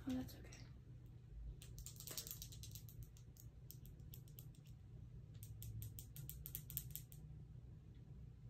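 Rapid light clicking from handling a small glass dropper bottle, in three short runs of about eight clicks a second.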